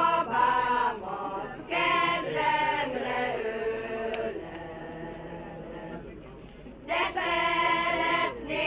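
Small mixed choir of men and women singing a Hungarian song without accompaniment, in long sung phrases. The singing thins to a quieter held passage in the middle and comes back strongly about seven seconds in.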